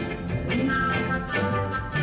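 A rock band playing live: drum kit, electric guitar and bass guitar, with a violin.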